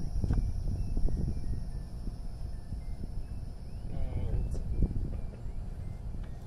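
Low wind rumble on the microphone, with a few faint knocks and a brief snatch of voice about four seconds in.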